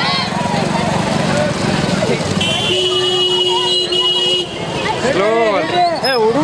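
Crowd of marchers' voices in a street procession, with a vehicle horn sounding one steady note for about two seconds in the middle, broken briefly once. Near the end loud voices shout out over the crowd.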